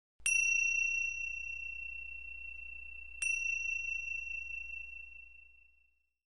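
A high, clear bell-like chime struck twice, about three seconds apart, each ring fading away slowly, over a faint low hum.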